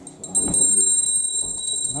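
A bell ringing continuously with rapid strikes, starting about a third of a second in after someone is told to ring.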